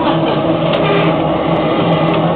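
A steady, loud mechanical hum with a constant low drone.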